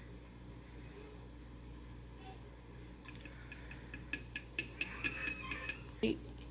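Faint handling sounds from a plastic scoop and a glass water bottle as powder is tipped in. Quiet at first, then a run of light clicks and taps over the last few seconds, some with a brief glassy ring.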